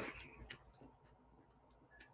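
Near silence: room tone with a brief soft knock at the start and a few faint clicks after it.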